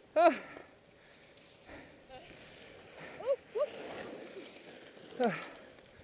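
A man's short breathless exclamations, 'ah', 'uh', 'oh', 'ah', each falling in pitch: one at the start, two close together past the middle, one near the end. A faint hiss runs between the later calls.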